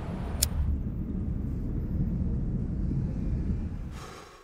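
City street traffic ambience, a steady low rumble of passing vehicles, with one short sharp click about half a second in; it fades out at the end.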